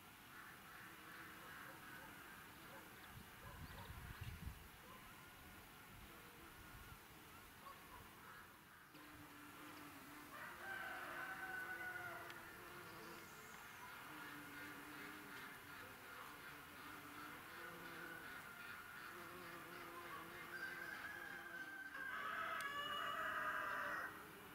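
Bees buzzing faintly around flowering lavender, the buzz coming and going as they fly between the flowers. A rooster crows in the background, about halfway through and again, louder, near the end.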